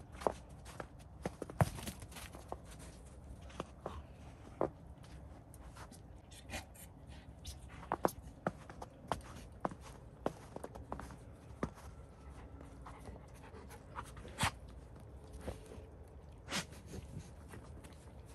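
Irregular sharp crunches of snow, with a golden retriever panting between them.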